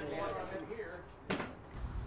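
A faint voice, then a single sharp click a little past halfway.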